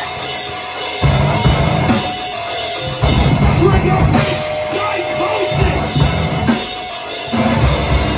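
Heavy band playing live: drum kit, bass and distorted guitar hitting together in stop-start blocks. The heavy low end cuts out for short gaps near the start, around three seconds in, and twice more near six and seven seconds in.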